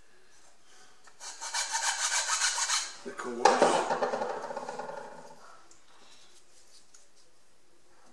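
Hand file rasping on balsa wing ribs in a quick run of back-and-forth strokes, cleaning out the rib slots, starting about a second in. About three and a half seconds in, a sharp knock that trails off over a couple of seconds as the file is set down.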